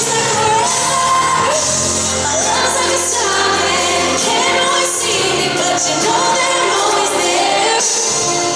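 A woman singing a pop ballad live into a microphone over band accompaniment, holding long notes.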